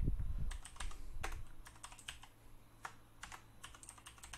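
Typing on a computer keyboard: irregular keystrokes, about four a second.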